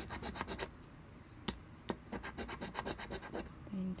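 A metal coin scratching the coating off a paper scratch-off lottery ticket in rapid back-and-forth strokes. The strokes break off briefly about a second in, where two sharp clicks sound, then resume.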